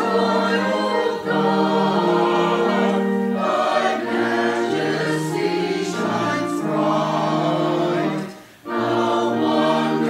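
Small mixed church choir of men and women singing in sustained chords. The phrases break briefly for a breath about eight seconds in.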